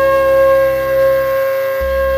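Carnatic music: a flute holds one long steady note over a low drone, and the low accompaniment drops out for a moment near the end.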